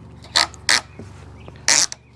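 Plastic ratcheting strap of a hitch bike rack's frame clamp being pulled around a bike's top tube and cinched: three short creaking rasps, the last and loudest near the end.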